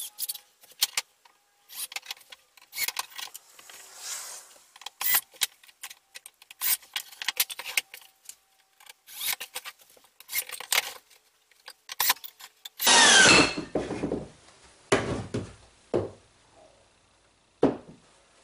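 Cordless drill driving one-inch drywall screws into a wooden panel. The loudest run is about 13 seconds in, its motor whine rising as it spins up, with shorter bursts after it. Before that come scattered clicks, knocks and scrapes of wood pieces and screws being handled and set.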